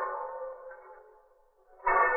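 A ringing pitched tone with many overtones fades away over about a second and a half. Just before the end, a second tone of the same pitch starts sharply and rings on.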